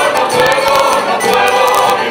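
Canarian folk group singing a song in chorus, accompanied by strummed Spanish guitars, a plucked lute and a double bass.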